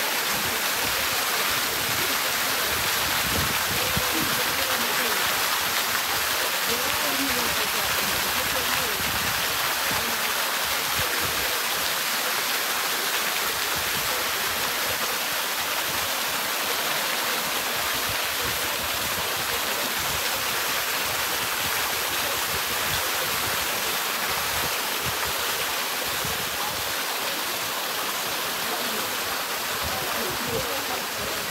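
Water cascading down a rock wall into a lagoon pool, a steady rush and splash of falling water on the surface.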